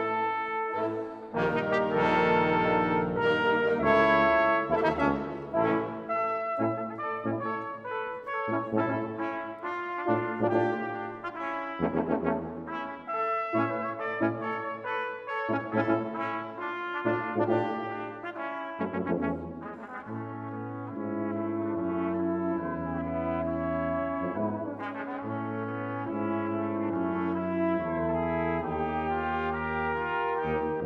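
A brass quintet of trumpets, French horn, trombone and tuba playing with a symphonic wind band, in a concert hall. Quick, accented passages give way about two-thirds of the way through to held low chords.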